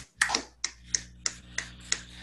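Scattered hand claps from a few people, sharp and irregular at about three a second, heard through a video-call connection over a faint low hum.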